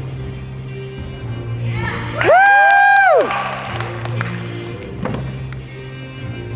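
Music playing at a gymnastics meet, cut across about two seconds in by a loud, high whoop of cheering from spectators that rises, holds for about a second and falls away. A few sharp knocks follow near the end.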